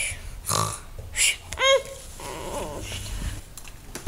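A child fake-snoring with short, noisy, rasping breaths, then one brief voiced sound rising and falling in pitch a little under two seconds in.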